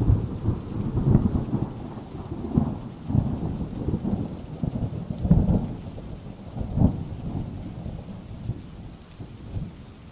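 Rolling thunder over steady rain, a storm that rumbles in several swells, the strongest about five and seven seconds in, and dies down near the end.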